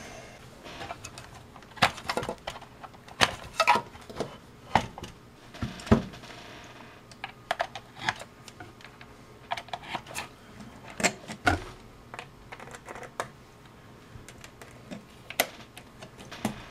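Irregular clicks and knocks of test leads being pulled from and plugged into a handheld digital multimeter's jacks, with handling against the meter and its foam-lined metal box, including a couple of heavier thumps about six and eleven seconds in.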